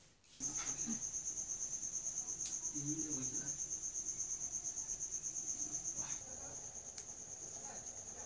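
A cricket trilling: a steady, high-pitched, fast-pulsing chirp that starts about half a second in and carries on, a little fainter after about six seconds.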